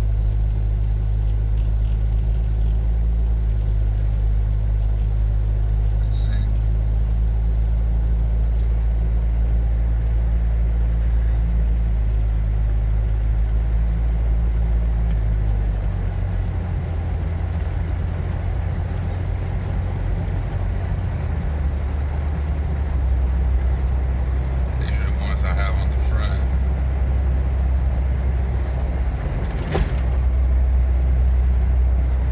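Jeep Wrangler driving on the road, heard from inside the cabin: a steady low engine and road drone. Its pitch shifts about halfway through and again a few seconds later.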